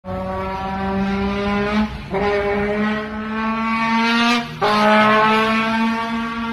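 Trombone mimicking a car engine accelerating through the gears: three long notes that each slide slowly upward and drop back at every 'shift'.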